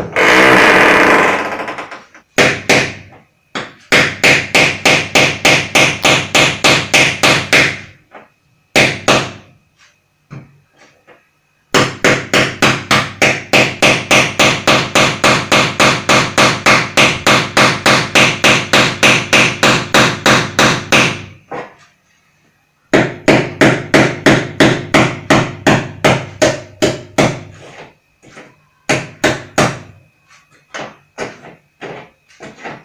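Hammer drill drilling in stop-start bursts, its hammering heard as a rapid pulsing of about four beats a second. There is a short unbroken burst at the very start, then runs of a few seconds, the longest about nine seconds in the middle, with brief pauses and short blips between.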